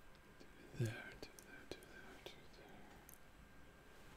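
A man's brief, quiet vocal sound under his breath about a second in, followed by a few light clicks, over faint room tone.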